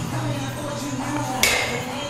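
Background music with a voice, and about 1.4 s in a single sharp metallic clank with a brief ring: iron dumbbells knocking down at the bottom of a deadlift rep.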